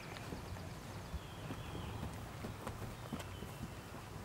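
Hoofbeats of a horse trotting on a sand arena, soft and muffled, over a steady low rumble.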